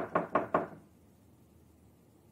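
Knocking on a door: four quick, evenly spaced knocks, over within the first second.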